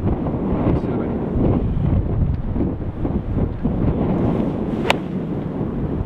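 Strong wind buffeting the microphone throughout, with one sharp click of a 56-degree wedge striking a golf ball about five seconds in.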